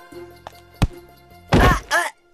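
Background film music with a steady bass line, broken by a single sharp thunk a little under a second in, then two loud bursts of noise near the end.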